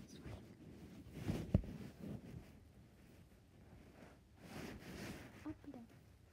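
Soft, faint pops of a silicone pop-it fidget toy as fingers press its bubbles, with one sharper pop about a second and a half in.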